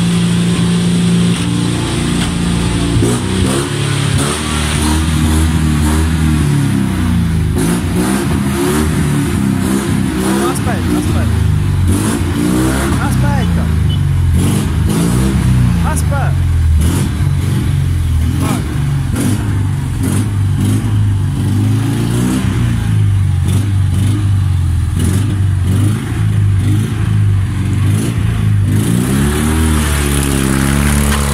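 Fiat 126's 650 cc air-cooled two-cylinder engine running close by, its pitch rising and falling repeatedly as it is revved and the car pulls away.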